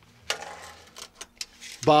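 A tape measure's steel blade being drawn out: a short scraping slide lasting under a second, followed by a few light clicks. A man's voice begins near the end.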